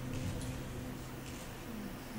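Quiet lull on a concert stage: faint room noise with a low steady hum, the lowest part of which stops about two-thirds of the way in.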